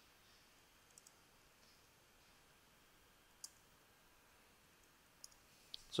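A few faint, sharp clicks from computer input over near silence: two close together about a second in, one at about three and a half seconds, and two more near the end.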